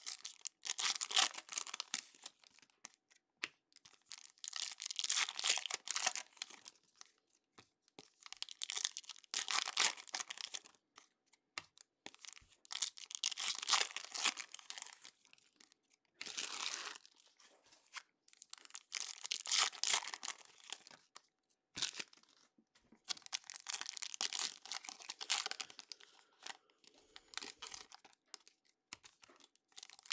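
Foil trading-card pack wrappers being torn open and crinkled by hand, in about seven rustling bursts a couple of seconds each with short pauses between.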